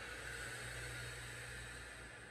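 A long, steady breath out through the mouth, a faint airy hiss, as she curls forward and presses the Pilates chair pedal down. A low steady hum lies underneath.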